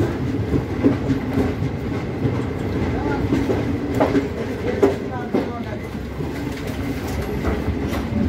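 LHB passenger train running on the track: a steady rumble with occasional sharp clacks of the wheels over rail joints.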